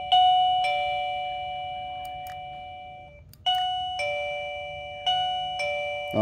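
Wireless gate doorbell's plug-in chime unit sounding a two-tone ding-dong, a high note then a lower one, each ringing and slowly fading. The button is pressed three times: the ding-dong starts at once, again about three and a half seconds in, and again about five seconds in.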